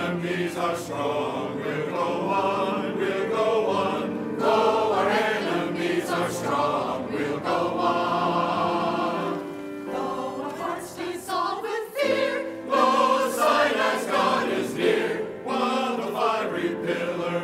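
Mixed church choir of men's and women's voices singing in parts, with a short dip in the singing about twelve seconds in.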